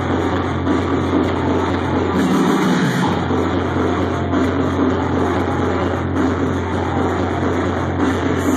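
Loud electronic dance music from a DJ set over a club sound system: a sustained deep bass tone under dense synth sound, with the bass briefly cutting out about two and a half seconds in.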